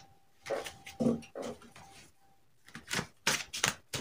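Hands handling tarot cards close to the microphone: a string of irregular short taps, slaps and rustles, coming thicker and louder near the end.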